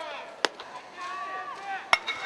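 Two sharp impacts in a baseball game. About half a second in, a pitched ball pops into the catcher's mitt. Near the end comes the louder crack of a metal bat meeting the ball, over players' and spectators' distant shouts.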